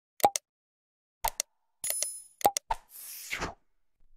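Sound effects for an animated subscribe button: a few short pops and clicks, a brief high bell-like ding about two seconds in, then a short whoosh near the end.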